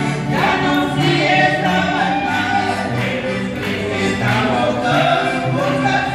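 A man and a woman singing a gospel hymn together through microphones, to the man's own piano accordion playing a steady rhythmic accompaniment.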